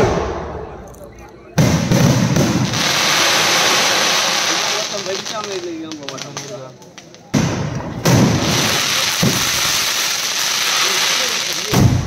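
Aerial fireworks going off: sudden bangs about a second and a half in and again around seven and eight seconds, each followed by several seconds of dense crackling, with another bang near the end.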